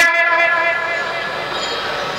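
A steady, held ringing of several tones from the public-address loudspeakers, carrying on after the voice stops and slowly fading.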